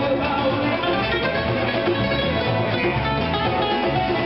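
Live band playing acoustic guitars with hand drums, a dense rhythmic instrumental passage with no voice.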